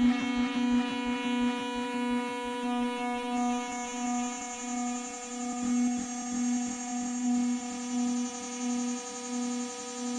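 Korg Electribe EM-1 groovebox, its clock slowed by an LTC1799 oscillator in place of the crystal, playing a pitched-down pattern: a steady droning synth tone that pulses about twice a second. A fast run of clicks early on thins out, and a high hiss comes in about a third of the way through.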